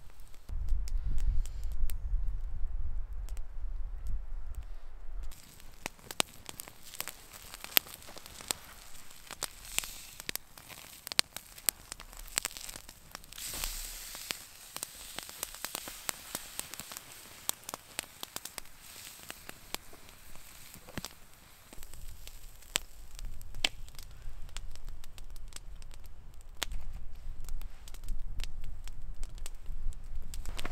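Wood campfire crackling with frequent sharp pops while a steak grills on a wire grate over the coals. A low rumble runs through the first five seconds and returns near the end.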